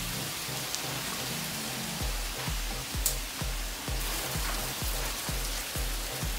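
Water from a hose hissing and sizzling as it hits the hot cooking grates of a wood-fired smoker, turning to steam as the grates are steam-cleaned. Background music with a steady beat plays underneath.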